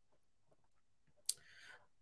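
A single short, sharp mouse click about a second in, as the presentation slide is advanced; the rest is near silence.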